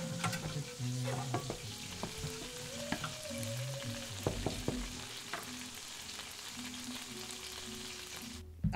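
Food frying in a pan, a steady sizzle, with scattered clinks and knocks of a utensil.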